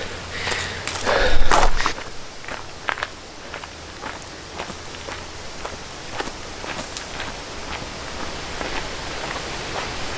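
Footsteps on a gravel lane at a walking pace, about two steps a second, over a steady outdoor hiss. About a second in there is a louder short burst of noise.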